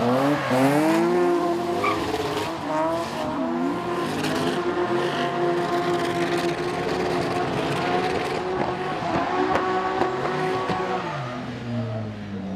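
Drift car engines at high revs in a tandem drift, with tyre squeal. The revs swing up and down over the first couple of seconds, then hold high and steady through the slide, and drop near the end.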